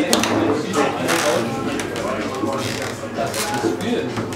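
Voices of people talking in the room, broken by a few sharp knocks of a table-football game as the plastic figures strike the ball and it hits the table.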